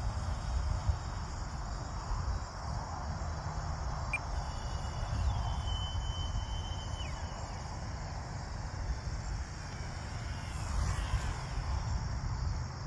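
Crickets chirping steadily, with a low rumble of wind on the microphone. A faint thin whine holds steady for a couple of seconds in the middle, then drops in pitch.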